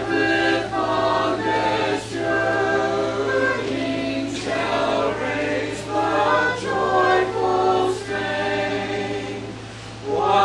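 A group of voices singing a hymn together, phrase by phrase with brief breaks between, growing quieter near the end.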